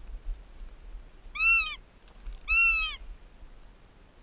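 A goshawk calls twice, two drawn-out wailing calls about a second apart, each rising and then falling in pitch.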